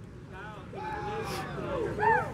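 Indistinct voices of people talking in a crowd, with one voice drawn out in a long held sound about halfway through, over a low steady background rumble.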